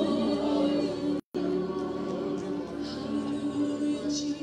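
Worship music: voices singing over sustained chords. The sound cuts out completely for an instant a little over a second in, a dropout in the stream's audio.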